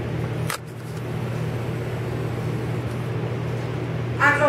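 Steady low machine hum, with a single sharp click about half a second in.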